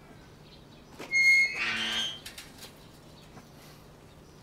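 Metal garden gate squeaking loudly on its hinges for about a second as it is swung, followed by a few light clicks.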